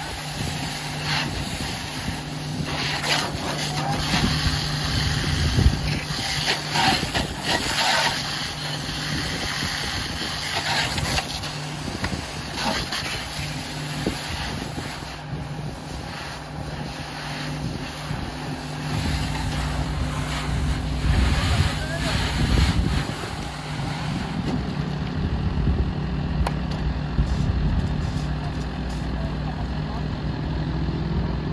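Hiss of a fire hose spraying water onto a burning car, with steam hissing off the hot bodywork, over the steady running of a fire engine's engine and pump. The engine rumble gets deeper about two-thirds of the way through.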